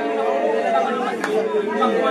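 A group of children praying and crying out aloud all at once, many voices overlapping with no single speaker standing out. A single sharp crack cuts through about a second in.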